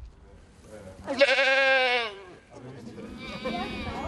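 A goat bleating: one loud, wavering bleat about a second in, then a fainter call near the end.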